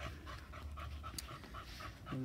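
A dog panting quickly and evenly, about six breaths a second.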